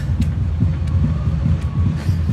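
Wind buffeting a phone's microphone: a loud, uneven low rumble with no clear pitch.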